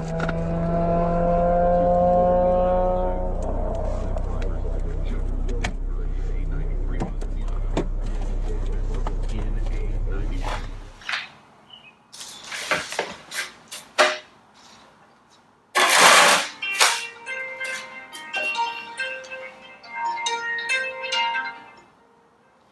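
In-cabin sound of a Mazda MX-5 rolling over on a track: a heavy, steady rumble for about the first eleven seconds, which cuts off abruptly. Then a broom and dustpan scrape and knock, with a loud rustling crash of debris about sixteen seconds in. A phone ringtone plays a short repeating melody for the last few seconds.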